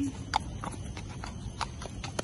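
A shod racehorse's hooves clip-clopping on pavement at a walk: a series of sharp, evenly spaced strikes, about three a second.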